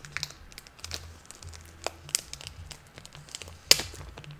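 A pen writing an inscription on a comic book, with the paper rustling as it is handled. The scratches and rustles come in short scattered bursts, and the loudest rustle comes near the end.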